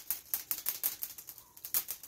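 Quick, irregular light clicks and rattles of rabbits moving about in wire-mesh cages.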